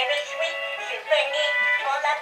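Hallmark Tip and Fall Tweety musical plush toy playing its song: electronic music with a high-pitched recorded voice singing.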